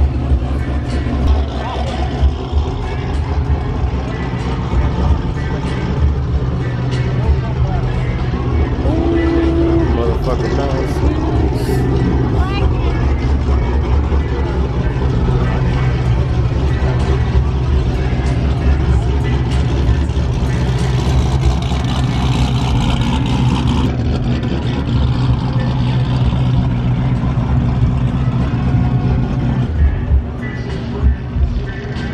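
Car meet ambience: a loud, steady low rumble from the vehicles, with indistinct voices of the crowd over it.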